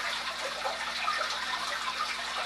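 Aquarium water circulation: a steady wash of moving, splashing water from the tank's filtration, with a faint steady hum underneath.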